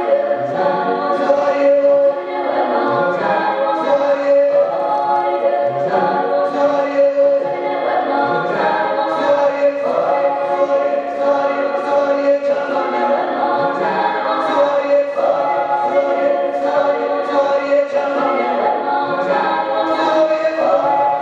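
A group of voices singing together in harmony, choir-like, over a steady held note.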